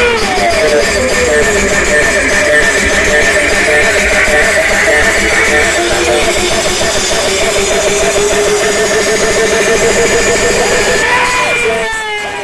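Music played loud through a large outdoor sound-system speaker stack, with a wavering, pitch-bending lead melody over a dense, steady backing.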